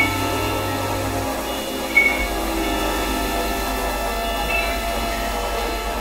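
Experimental electronic music of layered, steady droning tones over a low hum, with two short high beeps, one right at the start and one about two seconds in.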